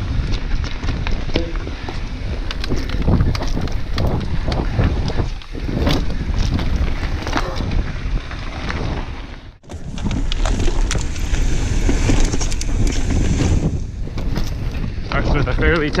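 Mountain bike ridden fast over dirt and rocky singletrack: wind buffeting the microphone and tyres rumbling, with many short rattles and knocks from the bike over bumps. The sound drops out briefly just before ten seconds in, then carries on as before.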